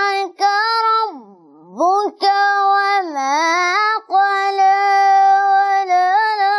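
A boy chanting Quranic recitation in melodic tajweed style, holding long high notes that dip slowly and climb back, with short pauses for breath between phrases.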